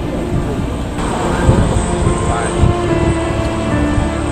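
British Airways Boeing 747-400's Rolls-Royce RB211 turbofans running at takeoff power, mixed with a song with a singing voice over it.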